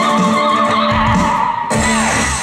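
Live ukulele band playing, with a high sung note held and wavering in pitch over steady lower notes. The sound changes shortly before the end.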